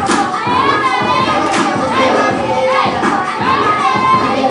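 Many children's voices chattering and calling out together, with dance music playing underneath.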